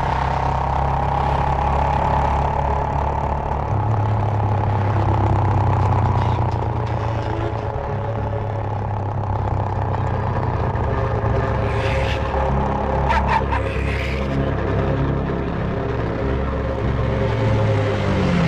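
A motorcycle engine running steadily under background music of sustained low notes, with a few brief clicks about two-thirds of the way through.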